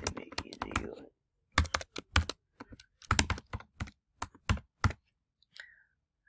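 Typing on a computer keyboard: a run of separate keystrokes, some in quick clusters, stopping about five seconds in.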